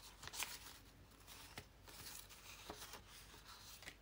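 Faint rustling and a few light taps of paper and card being handled and moved about, in short scattered bursts.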